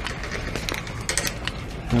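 Metal wire shopping cart being pushed across a store floor: a low rolling rumble with scattered light rattles and clicks from the basket.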